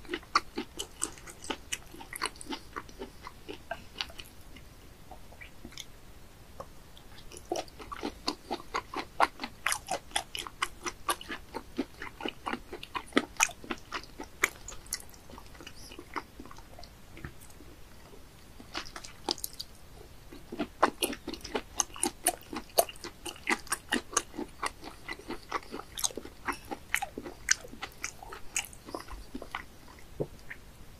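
A person chewing and biting raw sea bass sashimi close to the microphone: runs of rapid clicking chews, with two short lulls between mouthfuls.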